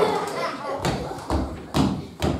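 Footsteps on a wooden hall floor: three dull thuds about half a second apart, at walking pace.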